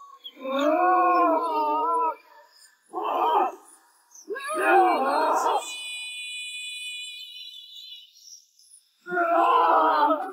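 A singer's long, wavering sung notes in short phrases with pauses between, and high held instrumental tones in the gap before the last phrase begins about a second before the end.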